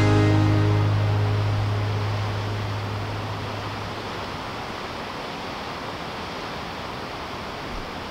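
The last chord of an acoustic guitar tune ringing out and fading away over the first few seconds, leaving a steady wash of ocean surf.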